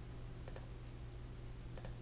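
A few faint computer mouse clicks, one about half a second in and two close together near the end, over a low steady hum.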